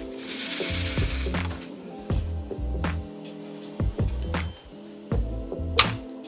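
Background music with a steady beat. Near the start a brief, even hiss lasting about a second and a half.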